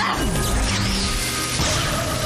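Cartoon sound effects over a music score: an electric blast with sliding-pitch zaps, then a crash as a monster bursts into a cloud of smoke.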